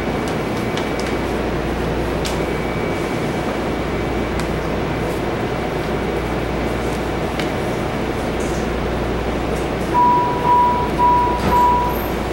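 Steady hum and rush inside a MARTA rail car. About ten seconds in, four short, evenly spaced single-pitch beeps sound, the car's door-closing warning tone.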